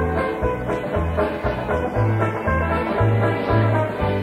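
Old-time square dance music playing an instrumental stretch between the caller's calls, over a steady bouncing bass line.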